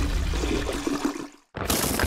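Water rushing as it drains away down a sinkhole, a flushing sound that fades out and stops about a second and a half in. A second short burst of rushing noise follows near the end.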